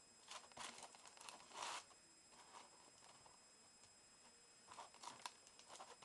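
Faint crinkling and rustling of aluminium foil as a foil-wrapped soda bottle is handled, in a few short bursts: a cluster in the first second, a longer crinkle at about a second and a half, then more near the end after a quiet stretch.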